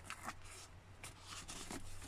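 Faint rustling and scraping of a hand tucking a wire back into the leather seat-back panel, a handful of soft strokes over the two seconds.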